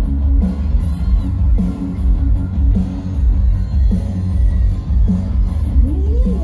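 Live rock band playing loud: electric guitars, bass and a drum kit keep a steady beat through an instrumental stretch, and the lead vocal comes back in right at the end.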